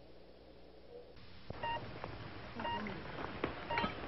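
Three short electronic beeps, quiet and about a second apart, starting halfway through, with a faint click just before the first.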